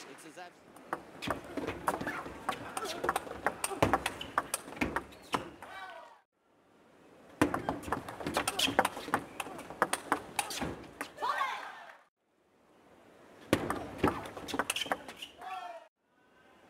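Table tennis rallies: the ball clicks in quick succession off bats and table over arena crowd noise. Each rally ends with a short shout, and the sound drops out briefly at two cuts, about six and twelve seconds in.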